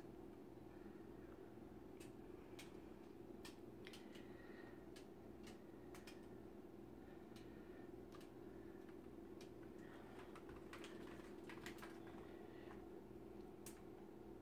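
Near silence: room tone with a steady low hum and scattered faint clicks.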